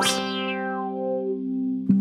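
Electric guitar chord played through a Subdecay Prometheus 3 dual filter pedal, ringing while a resonant filter peak glides down in pitch. It cuts off suddenly near the end.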